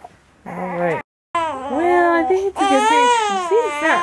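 Newborn baby crying: loud, wavering wails that start about a second and a half in and carry on without a break.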